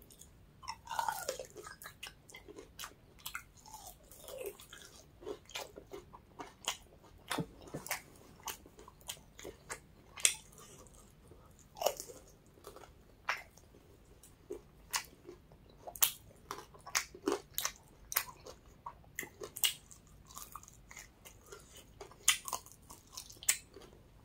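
Close-up chewing and biting on a chicken wing: an irregular run of wet mouth clicks and small crunches, a few each second.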